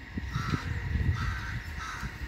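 A crow cawing three times, short harsh calls spaced well apart.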